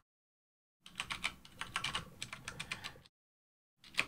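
Typing on a computer keyboard: a quick run of keystrokes lasting about two seconds, then one more key press near the end.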